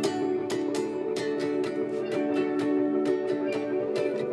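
Instrumental passage of a song with no singing: a guitar strummed in a steady rhythm, about four strokes a second, over sustained chords.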